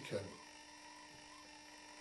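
A man's voice trailing off in the first moment, then a pause of faint room tone with a steady low electrical hum.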